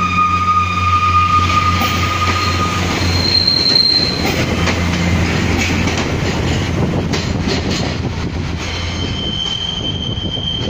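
Northern Class 142 Pacer diesel multiple unit pulling away: its underfloor diesel engines drone steadily while its rigid four-wheel axles squeal on the curving track. The squeal comes as long single tones that change pitch: one for the first three seconds, a higher one briefly a few seconds in, and another near the end. A few faint rail-joint clicks sound in between.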